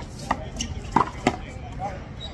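Sharp smacks of a small rubber handball in play: the ball struck by hand and rebounding off the concrete wall and court, three loud slaps within the first second and a half, the last two close together.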